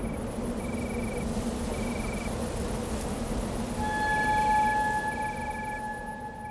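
Crickets chirping in short regular trills about once a second over a steady low rumble. About four seconds in, a steady electronic tone comes in and holds.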